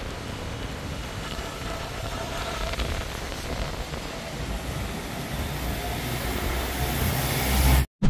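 Wet city street ambience: a steady hiss of traffic and rain. A deeper rumble builds near the end, then cuts off abruptly.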